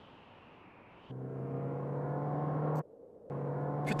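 Low, steady droning tone in the score, a resonant gong-like drone, sounded twice: it swells for under two seconds, breaks off for half a second, then returns at the same pitch.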